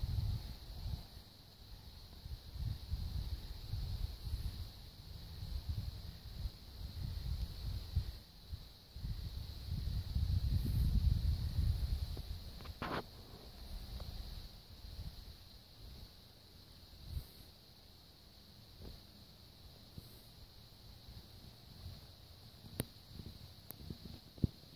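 Wind gusting over the phone's microphone, loudest about halfway through and dying away after, over a steady high chorus of insects at dusk.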